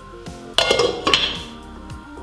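Cookware clattering against a cooking pot: a quick cluster of metallic clinks with a brief ringing, about half a second in, lasting roughly half a second.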